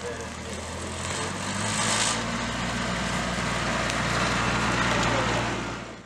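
Utility vehicle's engine running as it drives along a dirt road, a steady low hum under a broad rushing noise that grows louder over the first two seconds and drops away near the end.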